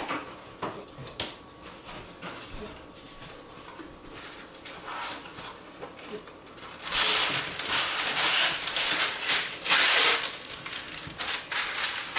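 Parchment paper pulled from its roll and torn off: rustling, crinkling noise in several loud bursts from about seven seconds in, after a quieter stretch of faint clicks and handling.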